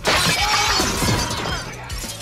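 A large pane of window glass shattering as a man is thrown through it: one sudden crash, then falling shards that fade over about a second and a half.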